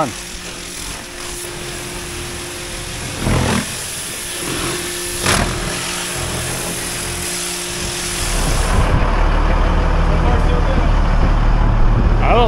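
Pressure washer spraying grease and oil off a wheel loader: a steady hiss with a steady hum under it and two brief louder surges. About eight seconds in it changes to a louder, low steady rumble.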